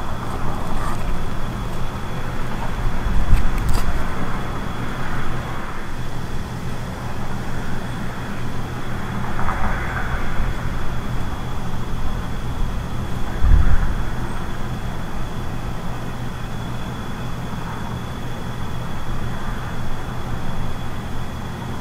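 Steady outdoor background hum with a low rumble, likely distant road traffic or a nearby machine, and a thin steady high tone above it. Two brief low rumbling surges stand out, about 3 s and 13 s in.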